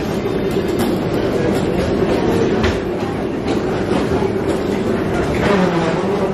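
Busy airport concourse: footsteps and rolling suitcase wheels rattling over the tiled floor, over a steady low hum of the hall.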